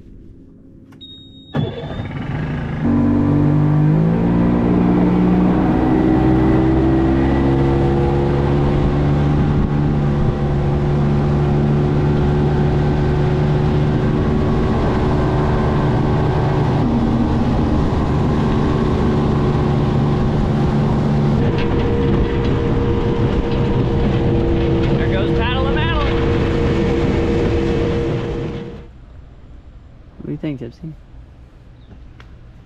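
Small outboard motor on a Gheenoe skiff starting about a second and a half in, revving up, then running steadily under way. Its note changes about two-thirds of the way through, and the sound cuts off abruptly near the end.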